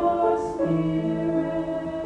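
A choir singing a slow sacred song in long, held notes.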